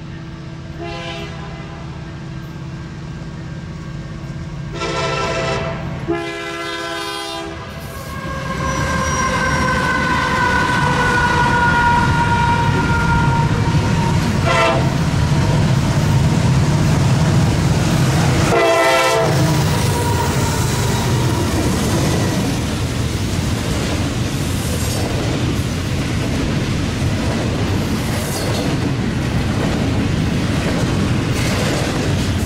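Diesel freight locomotives approaching and passing, their air horn sounding a short blast, two long blasts, then a short and a long one over a low engine rumble that grows louder as they near. Double-stack intermodal cars roll by with a steady rumble and wheel clatter, and a high drawn-out squeal slowly falls in pitch.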